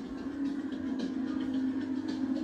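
A steady low drone with faint, evenly spaced ticks above it.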